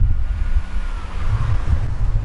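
Wind buffeting the camera's microphone, a loud low rumble, with a faint thin whine that falls in pitch about a second in.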